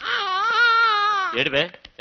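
A man wailing loudly: one long, high, wavering cry lasting about a second and a half, then a brief sob-like break.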